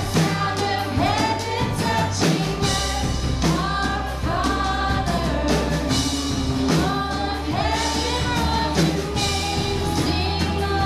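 Live worship band playing a rock-style song: voices singing over strummed acoustic and electric guitars, with a steady bass and drum beat underneath.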